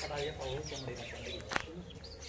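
Birds calling: low cooing and higher chirping, with one sharp click about one and a half seconds in.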